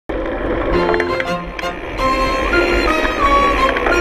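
Background music: a melody of held notes that step from one pitch to the next over a low bass.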